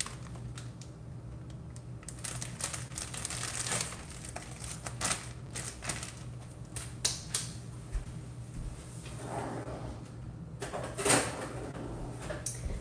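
Irregular sharp clicks, taps and crinkles from handling a plastic zipper bag of homemade bread and working on a cutting board, over a steady low hum.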